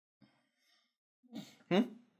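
A man's short breathy sigh followed by a brief questioning 'hmm', after about a second of near silence.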